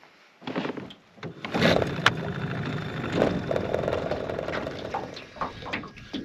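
Small outboard motor running steadily at trolling speed, with a few knocks and a sharp click in the first two seconds.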